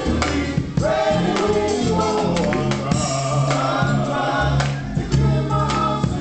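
Men's gospel choir singing together, backed by a drum kit and an electric keyboard, with steady drum strokes and sustained low keyboard notes under the voices.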